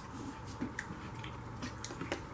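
Knife cutting apple slices on a plastic cutting board, a few faint taps and crunches, with apple being chewed close by.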